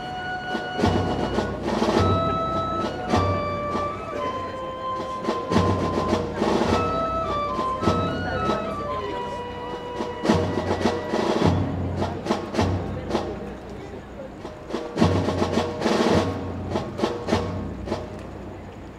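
Live band music: a slow melody of held notes stepping up and down over heavy, deep drum strikes that come every second or two.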